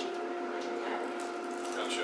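Quiet room tone with a steady hum made of two even tones, under faint background noise.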